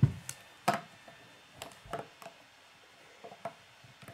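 Plastic Lego bricks clicking and tapping as a small brick-built safe is handled and set on a wooden table: a soft thump at the start, then a handful of short, sharp clicks spread over the few seconds.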